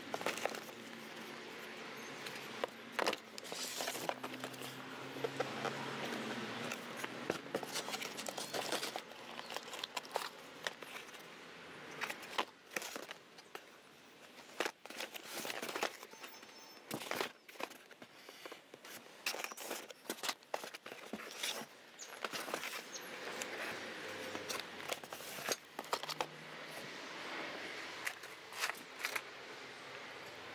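Cardboard parts boxes and packaging being handled and shifted inside a shipping carton: rustling and scraping, with many short sharp knocks and taps.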